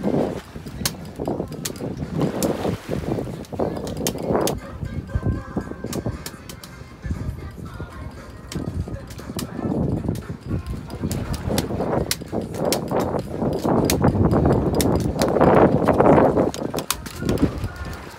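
Manual bandit reel being hand-cranked to wind in line, with a run of sharp clicks from the reel over a loud, surging low rush of wind and water.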